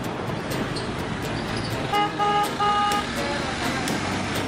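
Road traffic noise with a vehicle horn honking three short times about halfway through, the third toot the longest.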